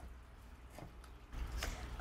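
Quiet room tone with a couple of faint light ticks. A low hum comes in about a second and a half in.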